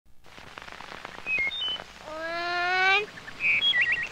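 Birds chirping in short high notes, over faint clicks from an old film soundtrack. About halfway through, a small girl's voice says one drawn-out word as she begins counting daisy petals.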